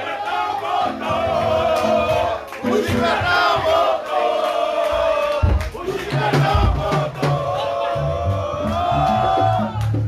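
A large crowd singing along in unison, holding long notes, over a live band's bass and drums.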